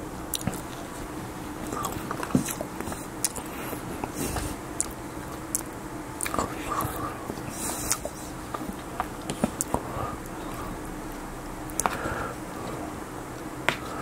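Close-miked chewing and mouth sounds from eating breakfast food, with many sharp clicks and taps scattered through.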